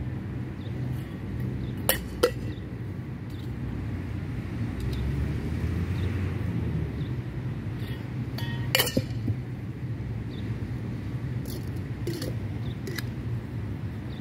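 Flair bartending bottles and a metal shaker tin clinking as they are tossed and caught. There are two sharp clinks about two seconds in, a louder cluster near the middle and a few more near the end, over a steady low rumble.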